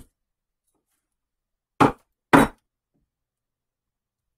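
Two chops of a large kitchen knife through an onion onto a bamboo cutting board. The two short knocks come about half a second apart, a little before the middle.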